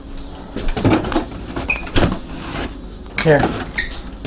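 Kitchen handling noise with two sharp knocks, about one and two seconds in, as things are moved and set down; a man says "Here" near the end.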